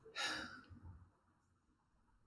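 A person's short breath out, like a sigh, lasting about half a second.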